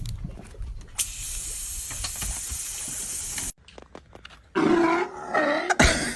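Water hissing from a garden hose spray nozzle for a couple of seconds, cutting off suddenly. Then a sea lion calls loudly a few times.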